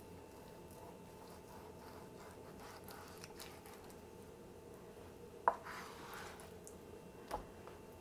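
Quiet knife work: a kitchen knife slicing a raw chicken breast in half through its thickness on a plastic cutting board, with faint scraping and soft handling of the wet meat. A sharp tap about five and a half seconds in and a smaller one near the end, as the blade or the meat meets the board.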